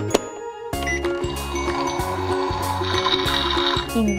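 Background children's music with a steady beat. A sharp click comes right at the start as a button on a pink toy oven is pressed, and from about a second and a half in the oven's electronic heating sound effect hisses over the music until just before the end.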